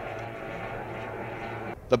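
Outboard engines of tunnel-hull race boats running flat out at a steady pitch, heard as a distant drone that cuts off just before the end.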